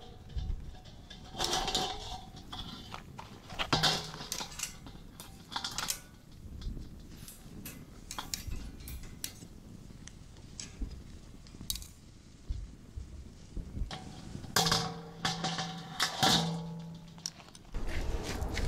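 Scattered metallic clanks and clinks: a stainless steel bowl and metal tongs knocking against a wire grill grate as skewers are set on it.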